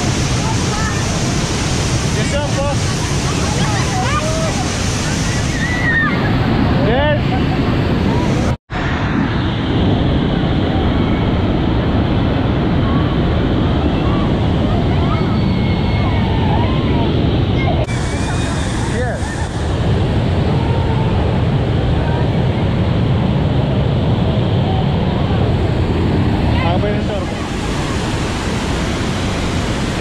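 Loud, steady rush of a waterfall at Niagara, Bridal Veil Falls, pouring down close by, with spray and wind buffeting the microphone and people's voices calling out over it. The sound drops out for an instant about nine seconds in.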